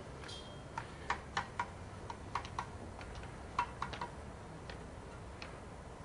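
Sharp, irregular clicks of stone knocking on stone as a man works loose stones on top of a dry-stone wall, about a dozen in the first two-thirds, then only a few.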